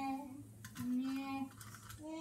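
A boy moaning in disgust with his hands over his mouth: two long, steady, pitched groans, the first ending just after the start and the second held for about half a second near the middle, with short breaths between them.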